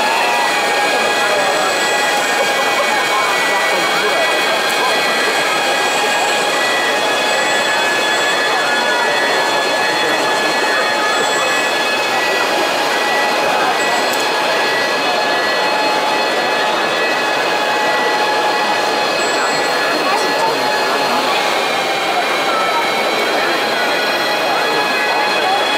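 Electric motors of radio-controlled snow-groomer models and their snow blowers running with a steady high whine, several pitches held together, over the dense chatter of a crowded hall.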